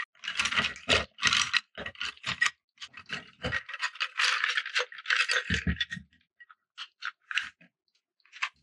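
Wooden coloured pencils rattling and clattering against each other and a ceramic pencil cup as a handful is pulled out and set down. A dense run of short clatters thins to scattered clicks after about six seconds.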